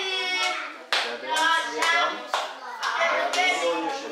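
A group of children's voices singing together while clapping hands in a steady rhythm, about two claps a second; the claps come in about a second in.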